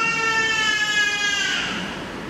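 A single high-pitched crying wail, held at one pitch for about a second and a half, then dipping and fading away near the end.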